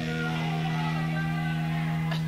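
Steady electrical mains hum, a loud low buzz with a ladder of overtones, from the stage amplification on a live recording. Faint scattered higher tones sit above it.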